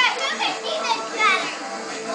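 Girls' excited high voices calling out and squealing over background music, with the loudest cries right at the start and again about a second in.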